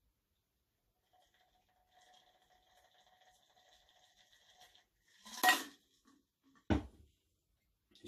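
Cocktail pouring from a stainless steel shaker through a fine mesh sieve into a coupe glass, a faint thin trickle. About five and a half seconds in there is a sharp metallic clunk as the shaker is set down on the counter, and a second, duller knock follows about a second later.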